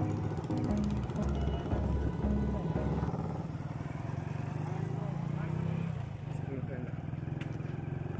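Motorcycle engine running steadily as the bike rolls along, with music playing over it for the first three seconds or so.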